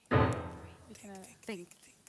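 A sudden loud thump with a short ringing decay, followed by a few brief murmured vocal sounds.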